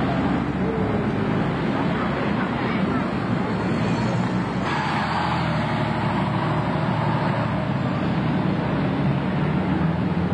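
A single-deck bus's diesel engine running as the bus drives up close and passes, with general street traffic noise; the sound changes character about five seconds in as it goes by and moves away.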